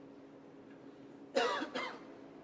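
A person coughs twice in quick succession, sharply, about one and a half seconds in, over the quiet hum of the arena.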